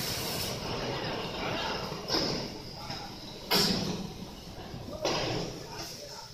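Indistinct voices over a steady noisy background, with sudden louder bursts about two, three and a half and five seconds in.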